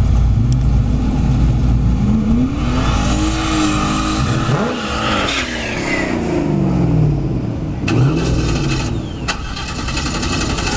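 Fourth-generation Camaro's LS1 V8 at the drag-strip start line: a loud low rumble at first, then revved up and down several times from about two seconds in, with one more short blip near the end.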